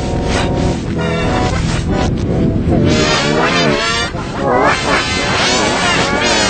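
Cartoon dialogue and music played backwards and layered in pitch-shifted copies, a 'G Major' edit: garbled reversed voices with gliding pitches over chord-like music.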